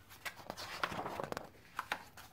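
Pages of a large picture book being turned by hand: paper rustling, then a couple of light taps near the end.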